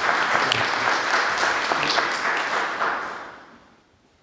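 Audience applauding, steady for about three seconds and then dying away to near silence just before the end.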